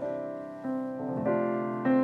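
Piano playing the slow opening bars of a song accompaniment, with notes and chords struck a little under twice a second. A fuller, louder chord comes near the end.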